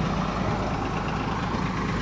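Truck engine idling: a steady, even low hum.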